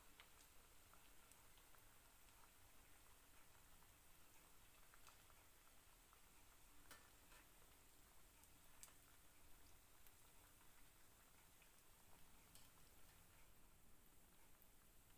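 Near silence: a very faint hiss of vadais deep-frying in hot oil, with a few scattered faint pops.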